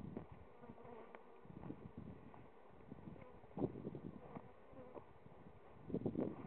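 Honeybees flying around their hives, a faint buzzing hum that rises and falls as bees pass close, from a colony foraging on a buckwheat nectar flow. A brief thump sounds about three and a half seconds in.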